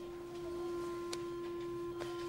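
Background music score: a single steady held note, close to a pure tone, with a faint click a little past halfway.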